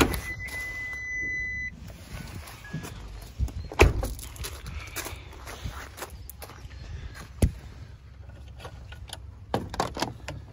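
A steady electronic beep lasting about a second and a half, then footsteps crunching on gravel with a few knocks, the loudest a sharp thunk about four seconds in.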